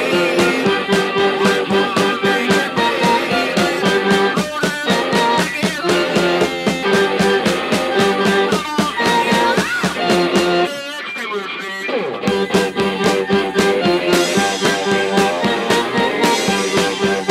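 Rock band playing live: electric guitar, drums and sung vocals at full volume. About eleven seconds in the drums and low end drop out for a second before the whole band comes back in.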